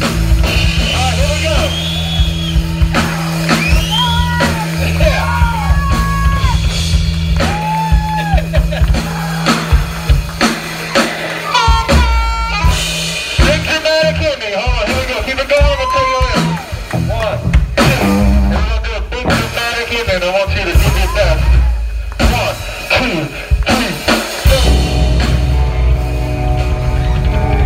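Live rock band playing loud: drum kit, electric guitar and bass, with bending high notes over the top. A held low note drops out about halfway through.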